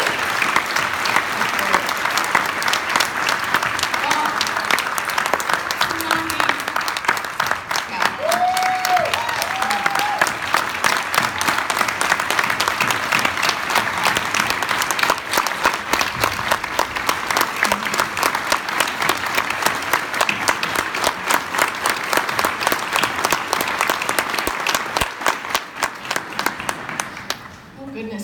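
A large audience applauding steadily for the whole stretch, with a couple of voices calling out about eight to ten seconds in.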